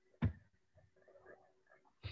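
A single sharp tap about a quarter second in, followed by faint, scattered small noises in a quiet small room.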